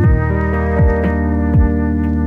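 Electronic music: a held synthesizer chord that shifts to a new chord right at the start, over three deep, pitch-dropping beat thumps about 0.8 s apart.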